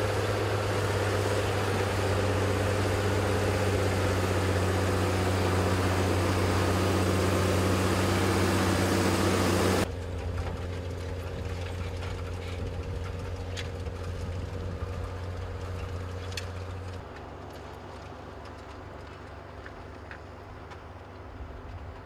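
Farm tractor's diesel engine running steadily while pulling a potato planter, a low even hum with a noisy rush over it. About ten seconds in the sound cuts suddenly to a quieter run of the same engine, and it drops again a few seconds later.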